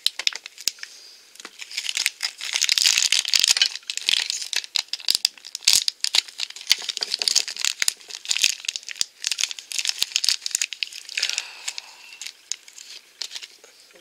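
A crinkly plastic Shopkins blind bag crumpled and torn open by hand: a run of crackling crinkles, densest a few seconds in.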